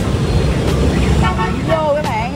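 Dense street traffic, mostly motorbikes, running close by as a steady low rumble. A short vehicle horn beep sounds a little past halfway, and a voice starts near the end.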